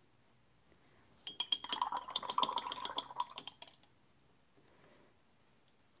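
A paintbrush rinsed briskly in a water jar: a rapid run of small ringing clinks as the brush knocks the jar's sides, lasting about two and a half seconds before stopping.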